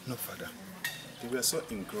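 A few light clinks of rosary beads handled in a hand, mixed with a man's low voice.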